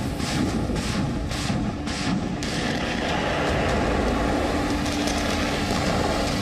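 Armoured vehicles on manoeuvres: a quick series of bangs over a heavy rumble in the first two seconds or so, then a steady heavy rumble.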